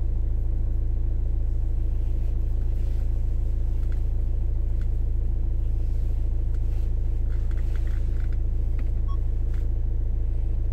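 Car engine idling while the car stands still, heard from inside the cabin as a steady low rumble with an even hum, and a few faint ticks.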